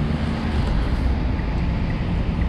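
Steady street noise: traffic on a wet road, with a low wind rumble on the microphone. Faint short high beeps come about twice a second.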